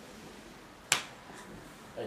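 Quiet room tone with one sharp click about a second in.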